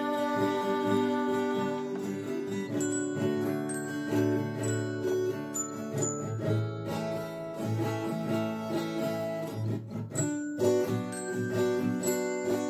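Acoustic guitar strummed steadily, with short high notes from a small glockenspiel struck over it.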